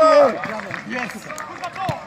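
Footballers shouting and yelling in celebration of a goal. Several men's voices overlap, loudest in a shout at the start.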